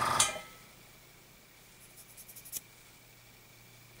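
A small mains-powered electric motor, of the kind that runs an airbrush compressor or spray-booth fan, hums steadily and switches off with a click a fraction of a second in, dying away within half a second. Then near quiet, with a few faint light ticks of handling about halfway through.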